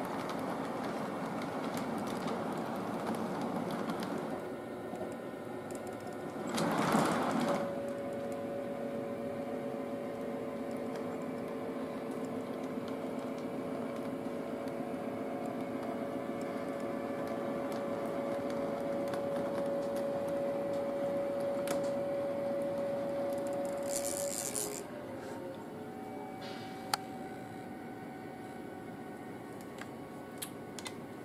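O-gauge model train running on three-rail track: a steady mechanical hum and rattle from its motors and wheels, with one held tone. A brief louder noisy burst comes about seven seconds in, and a short hiss near twenty-four seconds, after which the hum drops quieter.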